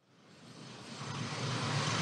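Street traffic noise fading in: a steady rush of noise that starts a moment in and grows louder throughout.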